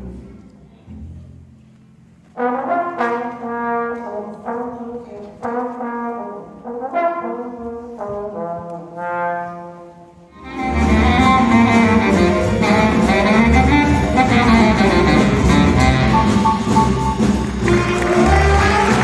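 Live jazz: a double bass fades out, then a trombone plays a string of short, separate phrases with gaps between them. About ten seconds in, the full jazz band comes in loudly with horns and rhythm section.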